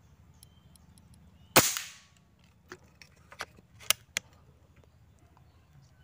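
A Bocap Jawa PCP air rifle fires a single shot, a sharp crack with a brief fading tail, about one and a half seconds in. A few much lighter clicks follow over the next few seconds.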